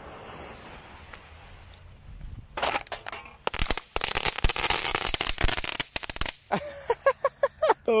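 Crackling-ball fireworks going off. Scattered sharp cracks start about two and a half seconds in and build into a dense, rapid crackle, which cuts off suddenly a little after six seconds.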